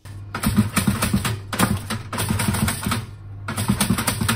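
A pop-up toaster being worked by hand: its lever and mechanism clicking and clattering in several quick bursts, over steady background music.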